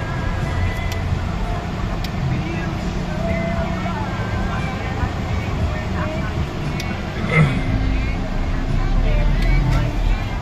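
Engine and road rumble of a moving car heard from inside its cabin, with faint voices or music in the background. A short thump stands out about seven seconds in.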